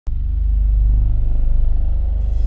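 A loud, steady low rumble with a fast, even pulse, like a running engine or passing traffic.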